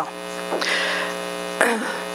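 Steady electrical mains hum with many overtones in the microphone and sound system, heard in a pause in speech. Two short noisy sounds break in, about half a second in and again near the end.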